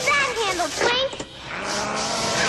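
Cartoon soundtrack: high, gliding squeaky character sounds and a quick run of rising chirps, a short lull a little past halfway, then a rushing noise as a puff of smoke appears.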